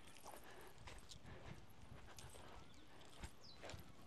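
Near silence: faint outdoor ambience with a few scattered soft clicks and a small knock about three seconds in.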